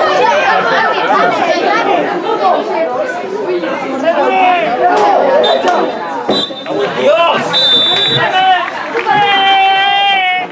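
Football spectators chattering and shouting over one another, with a few brief high whistle notes in the second half and one long held shout near the end.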